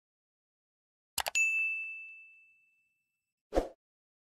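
Sound effects for an on-screen subscribe button: a quick double mouse click about a second in, then a bright notification-bell ding that rings out and fades over about a second and a half, and a short dull pop near the end.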